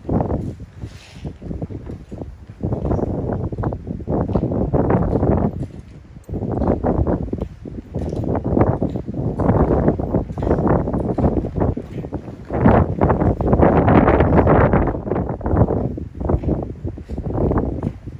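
Wind buffeting the phone's microphone in gusts: a rough rumble that swells and eases every few seconds and is strongest a little past the middle.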